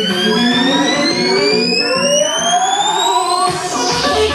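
Dance music playing loudly, with a DJ riser effect: a synth tone that climbs steadily in pitch while the bass drops away. It cuts off about three and a half seconds in, just before the beat comes back.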